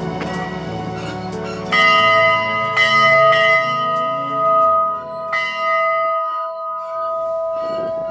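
A small metal bell rung by pulling its rope: about four strikes, the first nearly two seconds in and the last about five seconds in, each leaving a clear ringing tone that fades slowly, over background music.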